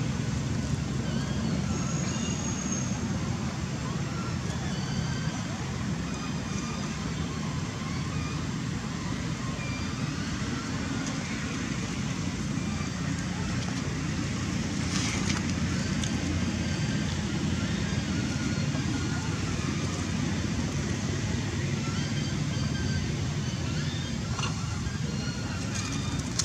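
Steady low outdoor background rumble, with scattered faint high chirps throughout.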